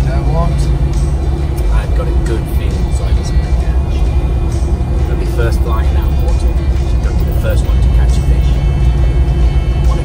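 Steady engine and road drone heard inside the cabin of a moving vehicle, with background music over it.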